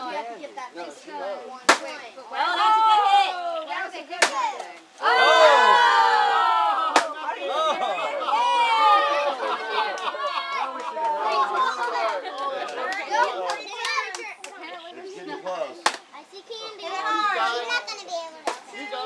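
Children shouting and shrieking, loudest about five seconds in, with four sharp knocks of a stick striking a cardboard piñata.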